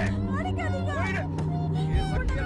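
Film soundtrack: a low held drone that steps down in pitch a little past halfway, under many overlapping wavering voices.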